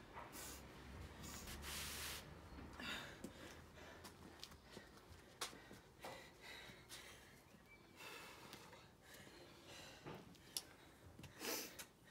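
A woman breathing hard in repeated heavy breaths, catching her breath after a hard workout interval. There is a sharp click about five seconds in and another near the end.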